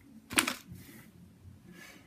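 A fridge-cold Milka caramel-filled milk chocolate bar snapped by hand: one sharp snap about half a second in. Faint rustling of the paper wrapper follows.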